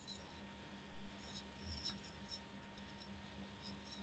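Low background of a voice call: a steady faint electrical hum with scattered faint, short high-pitched ticks.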